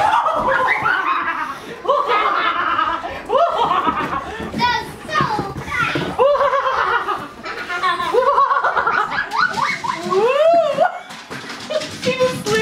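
People laughing and letting out high, excited vocal sounds that slide up and down in pitch.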